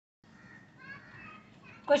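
A brief cut to dead silence, then faint background voices, before a woman starts speaking loudly near the end.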